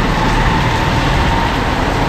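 Heavy rain pouring down in a loud, steady, unbroken hiss.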